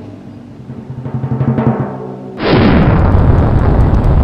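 Drum-roll sound effect playing from a computer while a random-winner picker runs. About two and a half seconds in, it gives way to a sudden, loud recorded crowd cheer that marks the winner being revealed.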